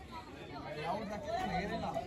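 Indistinct chatter of several people talking in the background, faint and unclear.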